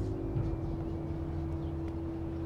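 Sustained drone of a dramatic background score: a held note over a low hum, with no melody, the lower part shifting about one and a half seconds in.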